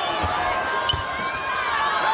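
Live basketball court sound: a ball being dribbled on the hardwood floor, with short squeaks of sneakers on the court.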